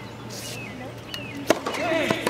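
A tennis ball struck by a racquet during a rally, a single sharp pop about one and a half seconds in, followed by a short vocal sound near the end.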